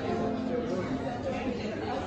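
Many people chatting at once in a church, with sustained pipe-organ chords held underneath.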